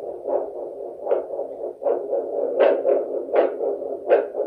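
Handheld 8 MHz vascular Doppler (Edan SonoTrax) sounding the blood flow in the radial artery at the wrist: a rhythmic whoosh with each heartbeat, about one pulse every three-quarters of a second. The steady pulsing shows arterial flow is present and the probe sits right over the artery.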